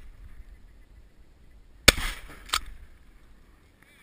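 Shotgun fired at a flying duck: one loud report about halfway through with a short echo, followed about two-thirds of a second later by a second, quieter sharp crack.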